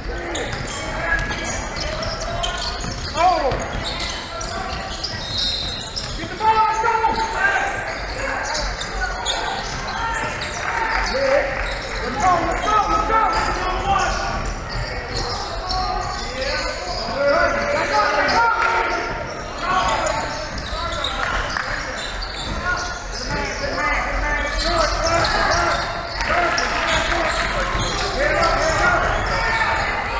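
Basketball bouncing on a hardwood court during play, with players' and spectators' voices and calls throughout, heard in a large indoor sports hall.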